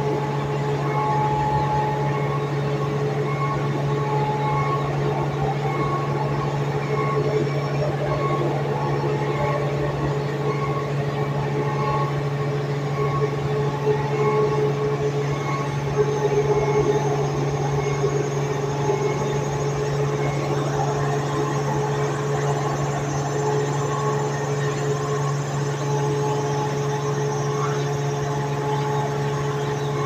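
Overhead rail-mounted compost turner's electric drive motor and gearbox running: a steady low hum with fainter steady whining tones above it.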